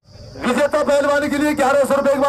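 A man commentating in Hindi, his voice starting about half a second in after a sudden cut to silence.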